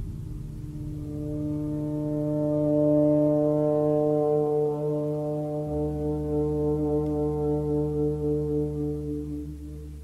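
Trombone sustaining one long low note that swells to its loudest about three seconds in, wavers slightly, and fades out near the end. A steady low drone enters underneath about halfway through.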